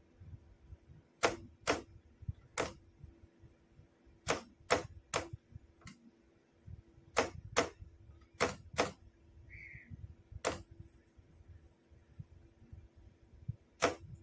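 Sharp clicks of a hand-operated key switching a Morse signalling lamp on and off as code characters are flashed. About a dozen clicks come at uneven spacing, several in close pairs, over a faint steady hum.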